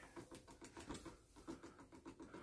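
Homemade pulse motor running slowly: faint, rapid, even clicking, about six ticks a second, as its coils are switched on each pass of the spinning rotor.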